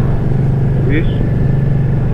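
Cruiser motorcycle's engine running steadily at an even, low note while riding, heard from the rider's seat. A short voice sound cuts in about a second in.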